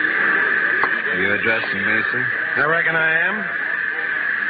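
Speech from an old-time radio drama recording, two short stretches of a voice over a steady hiss.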